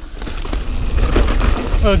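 Wind buffeting the camera microphone over the rolling of a Niner Jet 9 RDO mountain bike's tyres on a dirt trail while riding, a loud low rumble that grows louder over the first second.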